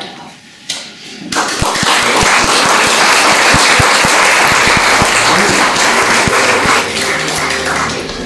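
Audience applauding, coming in suddenly about a second in and holding steady for several seconds before dying down near the end as music comes in.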